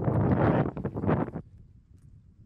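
Wind buffeting an outdoor microphone: a rumbling rush for about a second and a half that then drops away to a faint hiss.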